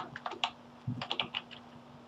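Typing on a computer keyboard: a quick run of key clicks entering a password, in two short bursts during the first second and a half.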